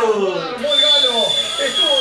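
Men's voices talking, with a thin, steady, high-pitched tone that comes in under a second in and holds for about a second and a half.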